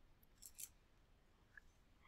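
Near silence: faint room tone with two brief, faint clicks about half a second in and another a second later.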